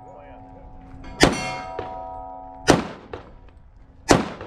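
Two pistol shots about a second and a half apart, with struck steel targets ringing in a steady tone that carries on between the shots and stops near the second.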